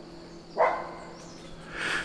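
A single short animal call about half a second in, over a faint steady hum.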